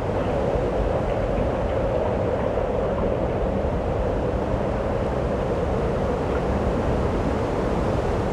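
A steady rumbling noise, with no speech or beat in it.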